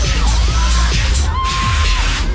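Loud fairground dance music with a heavy bass from a Tagada ride's sound system, with a held high note near the end.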